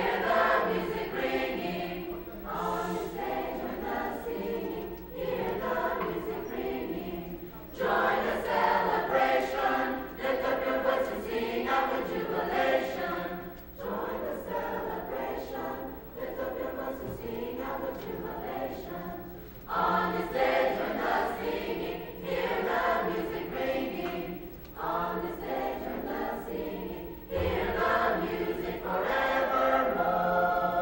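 High school mixed-voice choir singing a choral piece in parts, in phrases of a few seconds each that swell and then break off.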